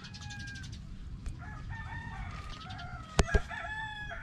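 Rooster crowing in long, wavering calls. Two sharp clicks stand out a little past three seconds in.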